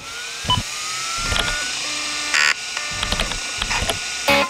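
Old DOS-era personal computer booting up: a drive motor spinning up with a rising whine, a short beep about half a second in, then disk-drive clicks and a brief burst of noise as the drive seeks.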